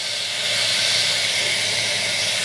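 Tap water running steadily into a sink or tub, a constant hiss, with a lump of bubble-bath playdough held under the stream so that it dissolves.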